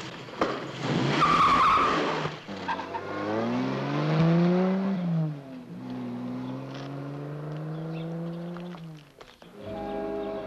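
A car pulling away hard: tyres squeal briefly about a second in, then the engine revs up, drops as it changes gear, and climbs again in the next gear before cutting off near the end. Music comes in just at the end.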